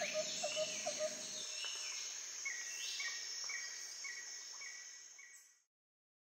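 Nature ambience bed: a steady insect trill, like crickets, with short repeated chirping calls and a few gliding bird-like calls over it. It fades away about five and a half seconds in.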